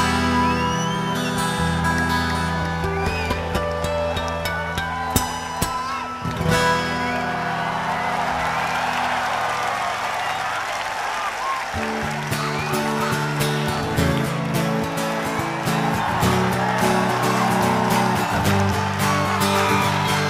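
Live band music led by guitar over sustained bass chords. The low notes drop out for a few seconds in the middle, leaving a dense mid-range wash of crowd noise and instruments, before the full band comes back in.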